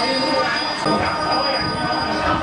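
Several steady, sustained metallic ringing tones held together over a murmur of voices, typical of temple bells or gamelan metal percussion ringing on.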